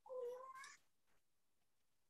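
A faint, short high-pitched cry rising slightly in pitch, lasting under a second near the start, coming in over an unmuted participant's line in an online video call. It is taken for children on the line.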